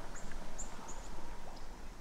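Three or four faint, short high-pitched bird chirps in the first second, over quiet outdoor background noise.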